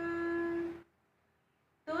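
A woman's voice chanting a Sanskrit poem to a sung melody, holding the last syllable of a line on one steady note. It cuts off to dead silence for about a second, and the next line begins right at the end.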